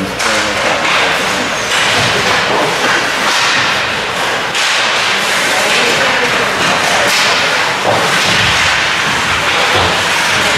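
Ice hockey play on an indoor rink: skate blades scraping the ice and sticks cracking against the puck and ice, with spectators shouting.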